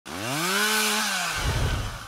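A chainsaw engine revs up, holds its pitch briefly, then winds down about a second in, trailing off into a low uneven rumble.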